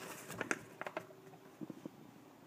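Hands handling a paper leaflet and small plastic minifigure pieces: a few light, irregular clicks and taps, with a cluster about half a second in and another near the end.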